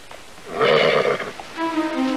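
A horse whinnies briefly about half a second in. Music with long held notes comes in near the end.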